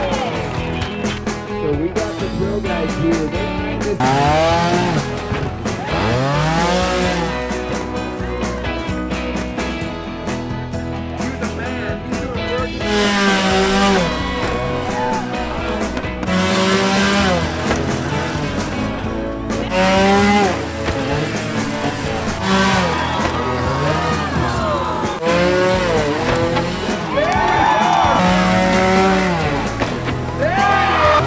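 Trials motorcycle engines revving in repeated sharp throttle blips, the pitch sweeping up and falling away, with the strongest revs coming in bursts every few seconds. Background music plays under them.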